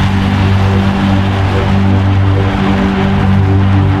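UK hardcore dance music from a DJ mix, with held bass and synth notes.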